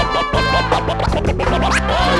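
Live band music with a steady beat and bass line, overlaid with turntable scratching; a sharp upward scratch sweep comes near the end.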